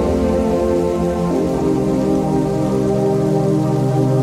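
Background music of slow, sustained chords that change about a second in.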